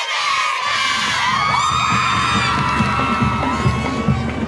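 A group of girls cheering and screaming together, with shrill whoops in the middle. About a second in, music with a low beat starts underneath.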